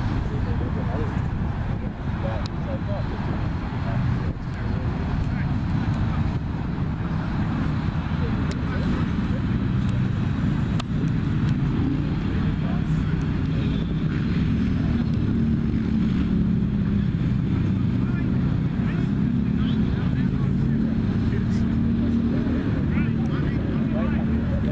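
Steady low rumble of road traffic, trucks and cars, with distant voices from the players mixed in.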